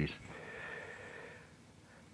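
A man breathing out through the nose: a soft hissing exhale lasting about a second and a half, then room tone.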